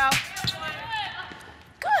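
Basketball bouncing on a hardwood court, a couple of sharp bounces in the first half second, with voices echoing in the gym.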